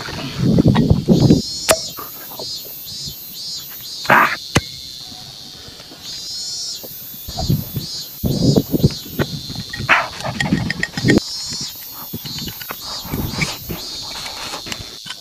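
Insects chirping in rhythmic runs of short high-pitched pulses, about three a second, with irregular close sounds of a person drinking from a bottle and eating: gulps, mouth noises and knocks.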